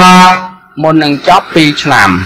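A man speaking in a small room, holding one syllable long and level at the start before carrying on in quick, broken phrases.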